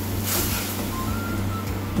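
A wooden ladle stirring spice powder into watery tamarind-tomato liquid in a clay pot, with a short splashy scrape about half a second in. A steady low hum runs underneath, and two brief faint beeps come in the middle.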